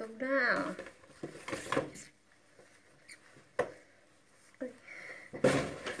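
Rustling and handling noise from a paper gift bag and knitted winter clothing being taken out, with scattered clicks, one sharp click about three and a half seconds in, and a louder rustle near the end.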